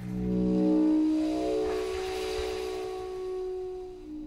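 Didgeridoo and contrabass flute improvising together: a sustained layered tone that swells in about a second in, with breathy air noise rising in the middle, then fades near the end.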